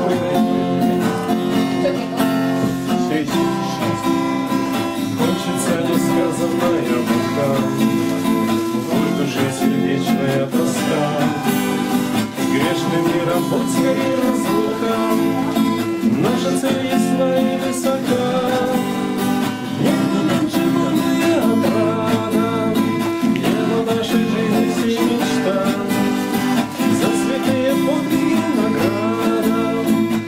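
Two acoustic guitars playing a tune together, one of them a nylon-string classical guitar.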